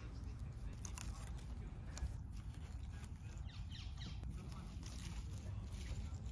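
Faint rustling of leaves and soil with a few soft clicks as spring onions are pulled up by hand, over a steady low rumble.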